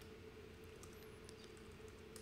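Near silence: room tone with a faint steady hum and a few faint computer keyboard clicks around the middle.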